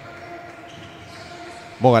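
Faint, steady background of a basketball game in a gym with no crowd, with a light steady hum and no distinct bounces; a man's commentary voice comes in near the end.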